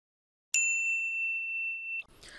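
A single bell-like ding sound effect, struck about half a second in, ringing on at one high pitch with faint higher overtones, then cut off sharply.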